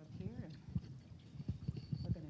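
Footsteps of several people walking across a carpeted floor: a run of soft, irregular low thuds, with a brief faint murmur of voices near the start.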